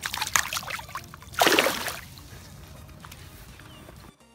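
Water sloshing and splashing as a bass is released by hand at the water's edge, with one louder splash about a second and a half in.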